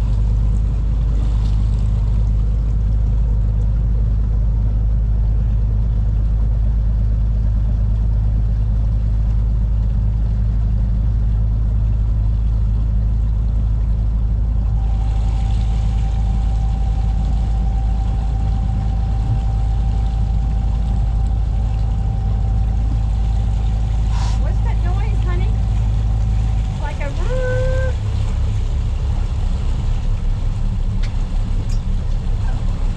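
A 40-year-old trawler's inboard engine running steadily under way, a loud deep drone. A thin steady high tone joins about halfway through. Near the end the engine note changes and turns uneven.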